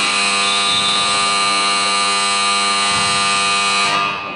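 Gym scoreboard buzzer sounding one long, steady, loud tone of about four seconds, cutting off sharply near the end.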